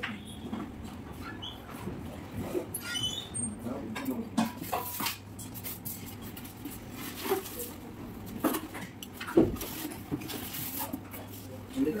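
A person eating rice by hand from a brass plate: mouth and chewing noises with scattered small clicks and taps of fingers and food on the metal plate, over a faint steady low hum.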